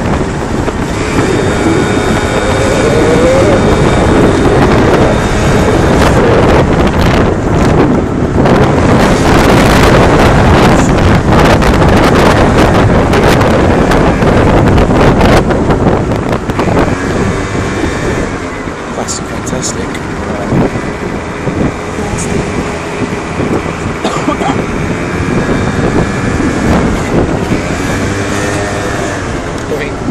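Wind buffeting the microphone of a moped rider in traffic, heaviest in the first half. In the quieter second half the moped's small engine can be heard under it, its pitch rising and falling with the throttle.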